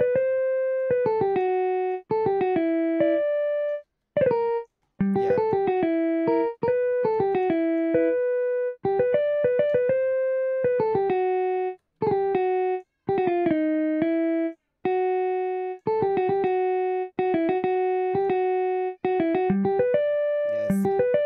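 A software instrument in FL Studio plays back a short melodic pattern from the piano roll, with a clear keyboard-like tone. The notes step up and down in phrases that repeat as the pattern loops, with brief drops to silence between some phrases.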